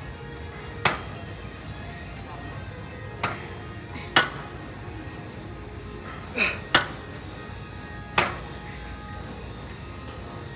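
Metal weight-stack plates of a seated leg extension machine clanking sharply as the stack comes down between reps, six times at uneven intervals with two close together past the middle. Background music plays throughout.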